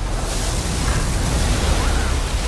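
Film sound effect of a giant wave of rushing water breaking over a small spacecraft: a loud, dense rush with a deep rumble underneath, swelling about a third of a second in.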